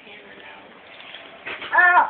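A young child's short, high squeal near the end, wavering in pitch.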